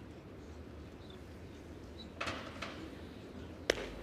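Quiet indoor sports-hall ambience with a steady low hum, a brief rustling noise a little past halfway, and one sharp click near the end.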